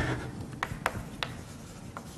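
Chalk writing on a blackboard: about four short, sharp taps spread over two seconds.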